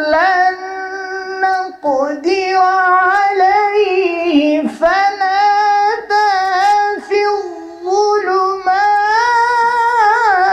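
A man reciting the Quran in the melodic, sung style of tilawah, holding long notes with wavering ornaments and pausing briefly a few times.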